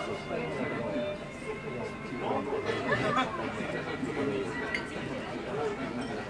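Coffee shop ambience: indistinct chatter of voices over background music, with a few faint clicks.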